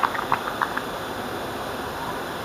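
Steady outdoor background noise with no clear single source, and a few brief distant shouts in the first second.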